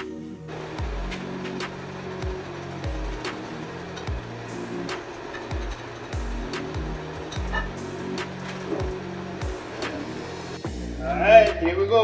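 Background music: an electronic beat with deep bass notes that fall in pitch, repeating about every 0.7 s, under regular ticking percussion.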